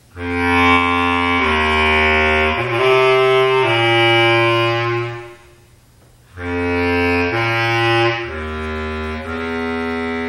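Bass clarinet played solo: two phrases of held low notes, each lasting a second or so and stepping up and down in pitch, with a pause of about a second between the phrases.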